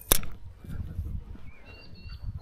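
A single sharp click from handling the spinning rod and reel, a fraction of a second in, followed by low handling rumble and a few faint high chirps near the end.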